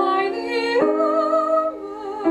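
A woman singing a classical art song with vibrato, accompanied by piano; she holds one note, then steps up to a higher, sustained note a little under a second in.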